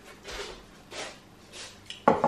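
Chewable vitamin C tablet being crunched between the teeth: three crunches about two-thirds of a second apart.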